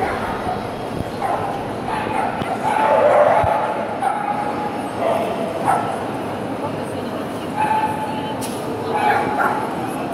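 Small dogs barking and yipping in short bouts several times, over a steady murmur of crowd chatter.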